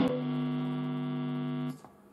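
Electric Fender Jazzmaster through a Big Muff–style fuzz, one distorted chord picked with a sharp click and then ringing out steadily. It stops abruptly near the end, leaving a brief faint tail.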